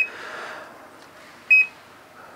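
CZone touchscreen control panel beeping twice as its buttons are pressed, two short high beeps about a second and a half apart.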